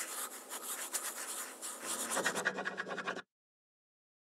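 Scratchy writing sound of a quill pen on paper, a sound effect for the quill drawing a logo. About two seconds in it turns fuller and louder, then cuts off suddenly a little after three seconds.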